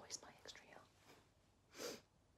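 A woman's voice trailing off into a faint whisper, then near silence and one short, audible breath near the end.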